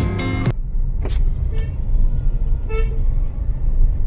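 Background music cuts off about half a second in, leaving the steady low rumble of a car's cabin on the move: engine and tyre road noise. Two short, faint horn toots sound in the middle.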